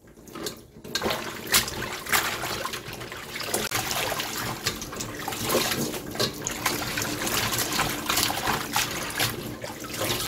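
Water sloshing and dripping in a stainless steel bowl as handfuls of salted young radish greens are swished in shallow water for their final rinse and lifted out to drain, with many short splashes.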